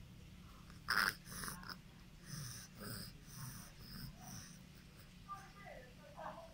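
A baby sucking on a milk bottle, with snuffly breathing and sucking sounds in short bursts about twice a second; one louder burst comes about a second in.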